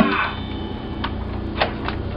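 Drum kit in a studio: a cymbal crash from a drum fill rings out and fades over a low steady hum, followed by three light, sharp ticks spaced well apart.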